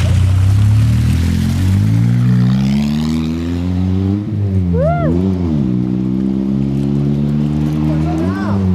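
Engine of an Afghan-built prototype sports car revving. Its pitch climbs slowly over the first few seconds, then there is a quick blip of revs about halfway through and another near the end.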